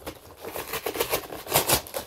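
Cardboard parcel box and its packing being pulled apart and torn by hand: a run of dry rustles and rips, loudest towards the end.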